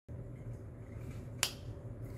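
A single sharp click about one and a half seconds in, over a steady low hum of room noise.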